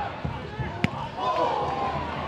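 Football match sound of crowd and players shouting, with a single sharp thud a little under a second in as the football is struck.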